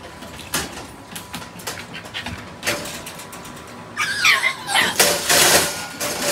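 An American bully dog whining in high, falling squeals about four seconds in, after a run of light clicks and knocks from the wire dog crates. A louder stretch of rustling noise follows near the end.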